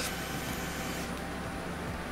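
Cordless drill-driver running steadily with a low hum while backing out a Phillips head screw from the top of a dryer.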